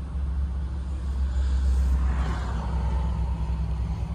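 The Ford Econoline 150 van's engine idling steadily, a low even hum heard from inside the cabin.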